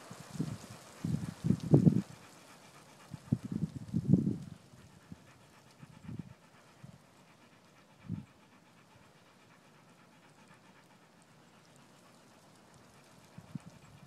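A dog panting close by in short runs of quick breaths. The panting comes in two bursts in the first few seconds, then a couple of single breaths, and stops about eight seconds in.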